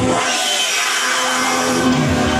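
Electronic dance music played loud through a club sound system, in a breakdown: the bass and kick drop out just after the start, leaving a wash of noise over the upper part of the track. The bass returns at the very end.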